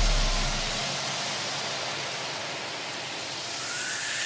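White-noise sweep in an electronic dance-music mix: a low bass note dies away in the first second, leaving a hiss that dips and then swells again near the end, a transition between two tracks.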